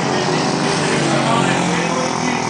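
Speedway motorcycles' single-cylinder engines running on the track, their pitch sliding up and down as they rev and ease off.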